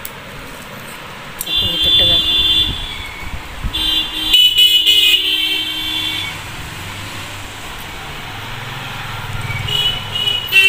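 A horn-like steady tone sounding twice, once for about a second and then for about two seconds, with a low rumble building near the end, like street traffic.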